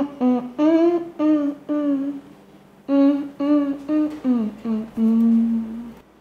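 A person humming a tune with closed lips in short notes, pausing about two seconds in, then resuming and sliding down to a longer low note held near the end.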